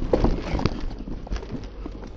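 Mountain bike riding over a rough dirt trail: tyre rumble with irregular knocks and rattles from the bike frame and parts as it hits bumps.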